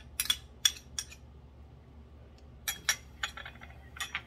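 Small ceramic dishes clinking, a handful of sharp clicks in two bunches, in the first second and again around the third second, as the dishes are tipped over a pan and set down on the countertop.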